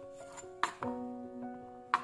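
Chef's knife slicing carrots on a chopping board: two sharp chops a little after half a second in and another near the end, over background music with held notes.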